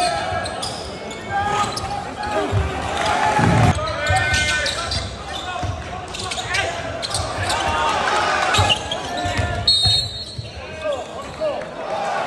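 Live basketball game sound in a large arena: voices from the crowd and players echoing in the hall, with a basketball bouncing on the hardwood court.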